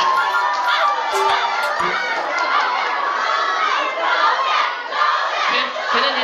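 A crowd of fans shouting and cheering together, many high voices overlapping, with the loudness dipping briefly a couple of times in the second half.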